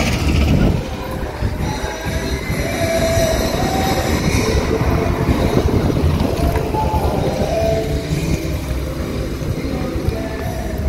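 Passing road traffic: car engines and tyre noise, with a steady low rumble that swells and eases as vehicles go by.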